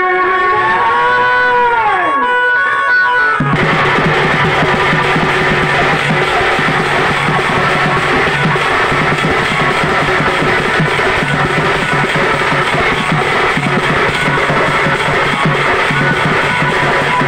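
Loud, distorted live folk music through a PA: a long held sung note bends down and stops about three seconds in, then heavy barrel-drum (dhol) beating with the ensemble cuts in abruptly and keeps going.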